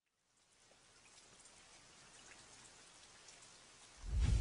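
Near silence, then from about half a second in a faint, even hiss with scattered light ticks fades in and slowly grows, like distant rain on a film soundtrack.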